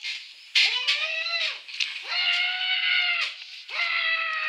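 A cat meowing: about four drawn-out meows, each rising then falling in pitch, the third the longest.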